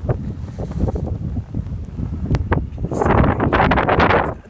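Blizzard wind buffeting a phone microphone in a constant low rumble, with a couple of sharp clicks. A louder gusting rush builds about three seconds in.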